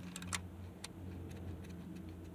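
Low steady hum of a car idling, heard inside the cabin, with a few faint irregular clicks in the first second.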